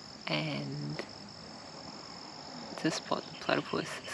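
A steady, thin, high-pitched insect trill, typical of crickets at dusk, under a woman's low voice. Her voice is heard briefly about half a second in and again near the end.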